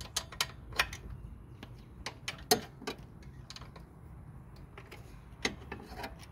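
Small irregular clicks and ticks of hand work on a mower engine's square oil drain plug as it is turned loose by fingers, several close together in the first few seconds, then only a few.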